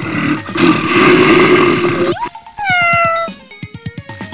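A cat's long, rough yowl, then a shorter meow that rises and falls away, over background music with a steady beat.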